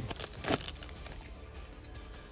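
Foil booster-pack wrapper crinkling and tearing open, loudest near the start and again about half a second in. Quiet background music plays under it.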